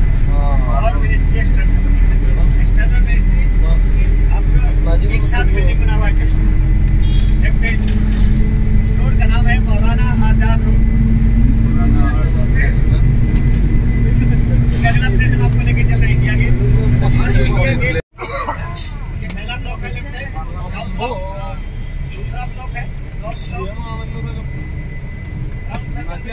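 Engine and road rumble heard from inside a moving vehicle: a loud, steady low rumble with an engine hum, and people talking now and then. The sound cuts out abruptly about 18 seconds in and comes back quieter.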